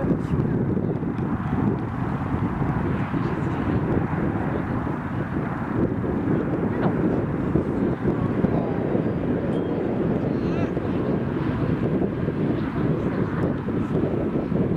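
Steady outdoor noise picked up by the camcorder microphone: indistinct voices from the field and sideline over a continuous low rumble that does not rise or fall.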